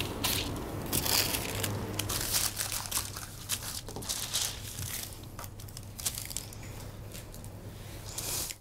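Scissors cutting through thin tissue paper, then the tissue paper crinkling and rustling as hands handle and smooth it flat, fainter in the second half.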